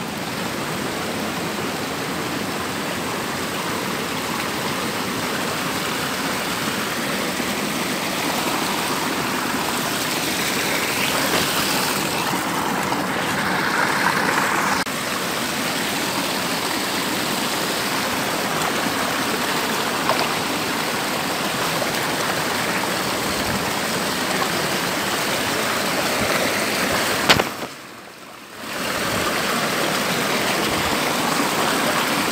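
Water of a small rocky mountain stream rushing and splashing down over stones in little cascades, a steady rush. Near the end there is one sharp click, and the sound drops out for about a second.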